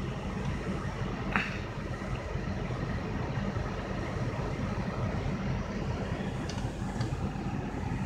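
Low, steady rumble of a car's engine running, heard from inside the cabin.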